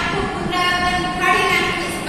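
A woman's voice speaking: the teacher talking on through the lesson, with no other distinct sound.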